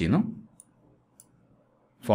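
Two faint computer mouse clicks, about half a second apart.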